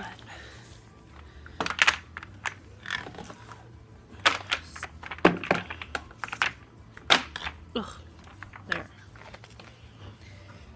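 A baby gate being wedged into place in a doorway: a string of irregular knocks and clatters about half a second to a second apart.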